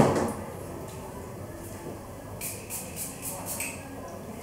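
Hand pump spray bottle of heat-protection styling spray spritzed onto hair, six or seven quick sprays in a row in the second half. A short thump at the very start.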